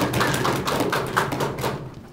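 Small audience clapping in a classroom, a dense patter of hand claps that dies away near the end.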